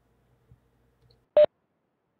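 A single short electronic beep about a second and a half in, over faint room hum.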